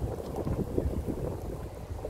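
Skateboard wheels rolling over asphalt and brick paving: a continuous low rumble with irregular small knocks, with wind buffeting the microphone.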